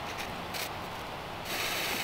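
A lighter being struck a few times with short clicks, then about a second and a half in, a firework's fuse catching and starting to hiss.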